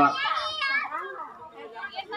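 High-pitched children's voices calling out among the crowd, fading after about a second, with a brief voice again near the end.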